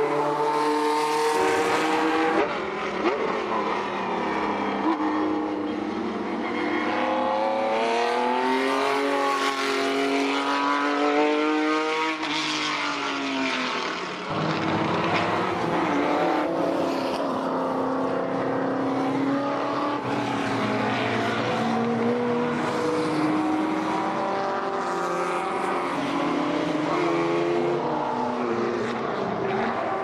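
Recorded car engine sound laid over the pictures: engines running and revving, their pitch rising and falling slowly over a few seconds at a time.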